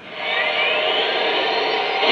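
Steam-hiss sound effect from the onboard sound system of a Lionel Legacy Camelback 4-6-0 model steam locomotive, a steady hiss.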